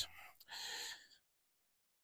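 A man's short breath in, lasting about half a second, taken in a pause between sentences.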